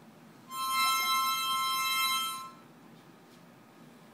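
Harmonica blown by a young child: one held chord of two notes sounding together, about two seconds long, starting about half a second in.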